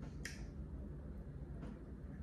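A quiet mouth click about a quarter second in, then a few fainter mouth clicks, from a person eating with her fingers at her lips, over a low steady room hum.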